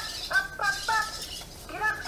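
Meccanoid robot's electronic voice: a quick string of short, high-pitched chirping syllables, each arching up and down in pitch, with a pause after about a second before more start near the end.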